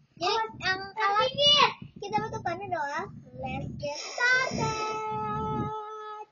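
Young girls' voices singing and chattering in quick, bending phrases, ending on one long held sung note from about four and a half seconds in.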